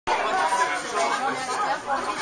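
Audience chatter: many people talking at once in a room.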